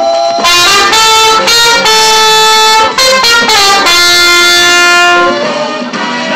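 Trumpet playing a slow melody: several long held notes, each about a second, joined by short quick runs of notes.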